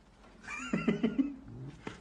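A high, quavering vocal call with a rapid whinny-like wobble in pitch, starting about half a second in and lasting about a second.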